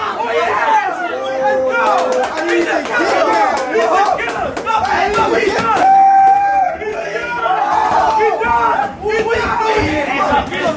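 Spectators shouting and cheering over one another at a boxing sparring bout, with some long held yells. A few sharp smacks, such as gloved punches landing, cluster between about two and four seconds in.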